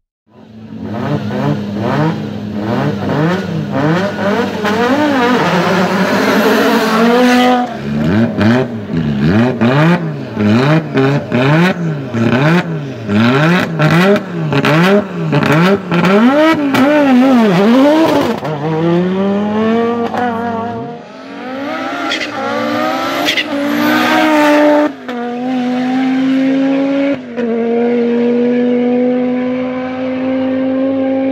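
Audi Quattro S1 Group B rally car's turbocharged five-cylinder engine idling, then blipped hard over and over, about once a second, with sharp pops between the revs. In the second half it pulls away, the pitch climbing steadily and stepping down at gear changes.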